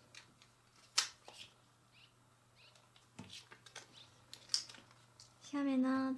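A few small, sharp clicks and ticks of plastic rhinestone stickers being peeled from their sheet and pressed onto a paper sticker picture, the sharpest about a second in.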